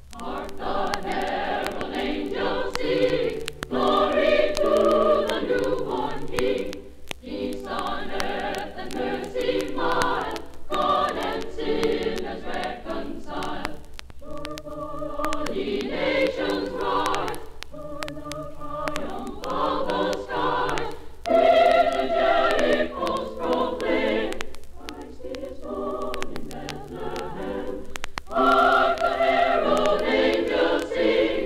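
All-female choir singing a Christmas carol, played from an old mono vinyl LP. The singing begins just after the record's lead-in hiss and comes in phrases with short breaths between them, over surface clicks and a steady low hum.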